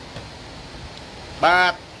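A man's voice: a short pause in his talk, then one drawn-out, nasal syllable lasting about a third of a second, about one and a half seconds in, over faint steady room hiss.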